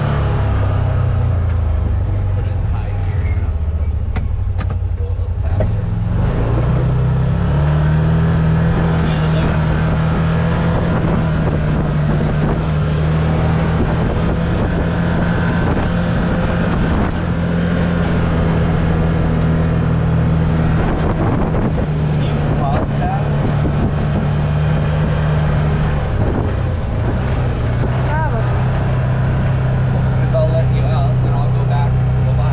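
Can-Am Maverick side-by-side's engine running under way, heard from inside the open cab. Its pitch drops in the first second, climbs again about six to seven seconds in as it speeds up, holds steady, then eases slightly near the end.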